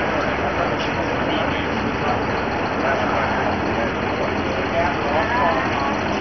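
Indistinct voices of people talking, under a steady background noise.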